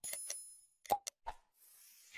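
Sound effects of a subscribe-button animation: a bell chime rings at the start and fades, sharp mouse-click sounds come about a second in, and a falling whoosh follows near the end.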